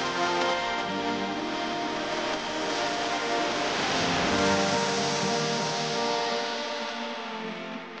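Background music with sustained, slowly changing notes, fading out near the end.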